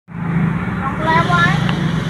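A motor scooter's engine idling steadily, with voices talking in the background.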